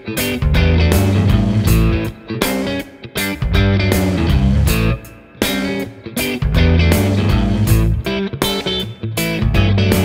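Patrick James Eggle Oz T-style electric guitar with Cream T pickups, played through an amp: a chord riff played in phrases of about two seconds, each cut off by a short stop before the next.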